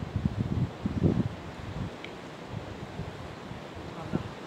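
Wind buffeting the microphone in irregular low gusts, strongest in the first second or so, then settling to a fainter steady rush.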